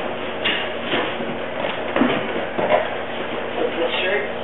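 Indistinct voices with a few light knocks and rustles of things being handled.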